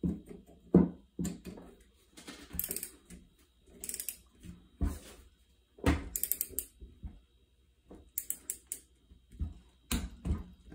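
Torque wrench with a 13 mm socket ratcheting in short irregular runs of clicks, with a few sharp knocks, as the M8 bolts holding a two-cylinder Rotax engine's crankcase halves are torqued down.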